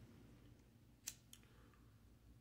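Two faint sharp clicks a quarter second apart, the first louder, from a handheld lighter being worked, in near silence.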